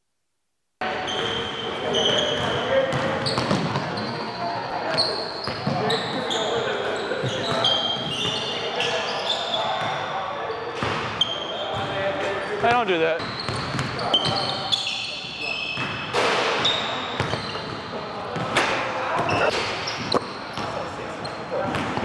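Silent for about the first second, then the sounds of a basketball game on a hardwood gym court: basketballs bouncing, sneakers squeaking on the floor, and players' voices calling out across the gym.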